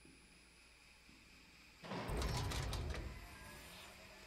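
A heavy sliding door rumbling open, starting suddenly about two seconds in and dying away over a second or so, a sound effect from the music video's soundtrack.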